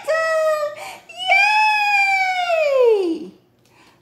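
A woman's high, sing-song falsetto voice: a short high note, then one long wordless call that slides steadily down in pitch over about two seconds, a playful exclamation.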